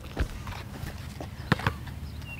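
A basketball bouncing on an outdoor asphalt court: a dull thud just after the start, then two sharp knocks close together about a second and a half in.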